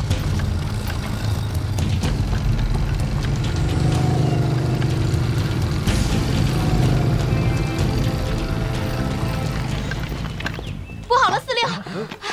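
Motorcycle-and-sidecar engines running as a convoy drives along a gravel road, a low rumble under dramatic background music. Both stop abruptly about eleven seconds in.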